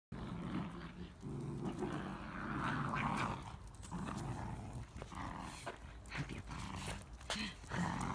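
Small dogs growling in play as they tug on a toy, in a run of low rumbles broken by short pauses, with scattered sharp clicks.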